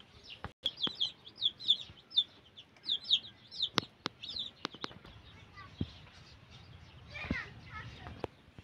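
Young domestic chicks peeping in quick runs of short, high, falling cheeps, with a few sharp clicks among them; a brief lower call comes near the end.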